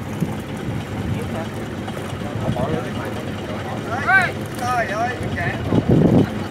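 A fishing boat's engine running steadily with a low rumble. A man's voice calls out a few short times about two-thirds of the way in.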